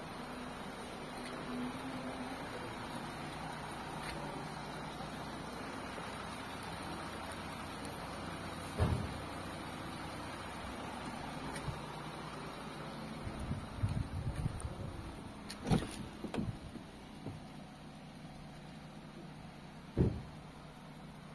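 A car engine idling steadily, with a few knocks and thumps around the middle and in the second half.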